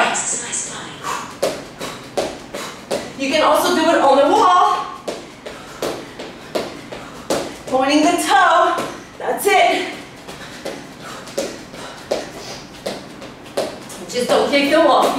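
Quick, even footfalls of sneakers stepping and landing on a wooden floor during a bodyweight workout, about three a second, with a woman's voice talking twice in between.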